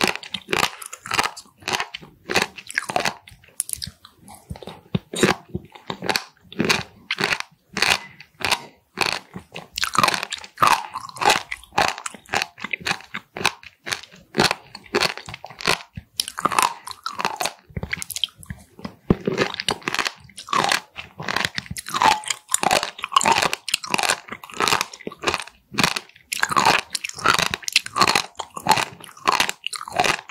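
Close-miked chewing of raw Styela plicata sea squirts, their tough skins crunching in quick, irregular bites with wet mouth sounds.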